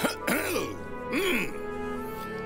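A cartoon character's voice makes two short throat-clearing sounds, each rising and falling in pitch, over soft background music.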